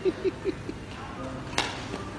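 Laughter in short, falling ha-ha bursts that die away within the first second, then a single sharp click about a second and a half in.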